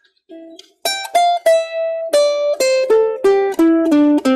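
Ukulele playing single plucked notes of a C major scale, stepping steadily down in pitch at about three notes a second after a short pause.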